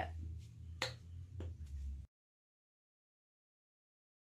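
Faint room noise with two light clicks, then the sound cuts off abruptly to dead silence about halfway through.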